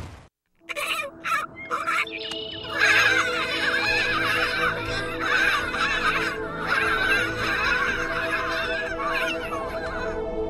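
A crowd of penguins calling over one another from about three seconds in, over a steady music drone. A few sharp knocks come in the first two seconds.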